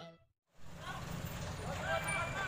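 The tail of a music sting fades into about half a second of silence. Then roadside sound cuts in: a steady low rumble of traffic with distant shouting voices rising over it.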